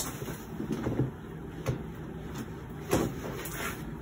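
Handling noise as a patient's bent leg is worked on a treatment table: a sharp click right at the start, then soft rustles of clothing and padding and a muffled knock about three seconds in.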